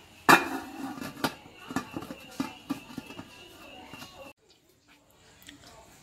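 A sharp metal clank as an aluminium steamer lid is handled, followed by a run of lighter metallic clinks and knocks for about four seconds.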